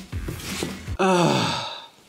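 A man's long, audible sigh: a breath drawn in, then a voiced exhale starting about a second in that falls in pitch and trails off. It is a sigh of weary reluctance at a chore he hates.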